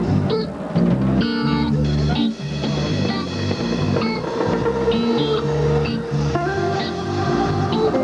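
Live reggae band playing a song, with electric guitar and bass guitar to the fore.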